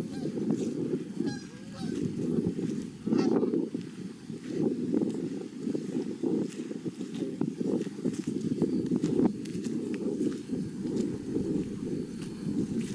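Geese honking repeatedly, with several calls overlapping throughout.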